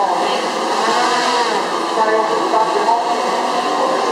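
DJI Phantom 3 Professional quadcopter hovering, its four propellers giving a steady whirring buzz, under a background of crowd chatter.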